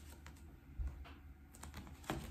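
A few faint, irregular light clicks and taps from an oracle card being handled and lowered, over a low steady room hum.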